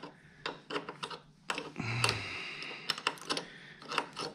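Irregular metallic clicks of a hand wrench and ratchet working the nut on a car battery's negative terminal clamp, with a short, louder noisy stretch about two seconds in.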